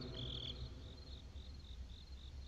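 Faint cricket chirping: a regular run of short, high chirps about four a second, with one longer chirp near the start.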